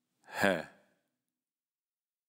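A voice saying the Spanish letter name "ge" once, pronounced like "he" with a throaty h-sound at the start and a falling pitch.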